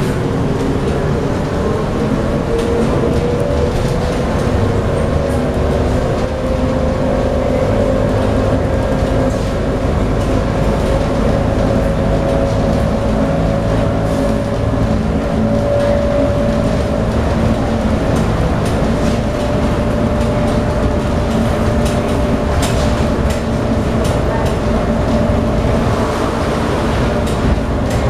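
SMRT MRT train running, heard from inside the car at the door: a steady rumble with an electric motor whine that rises slowly in pitch through the first half, as the train gathers speed, then holds level. A few sharp clicks come near the end.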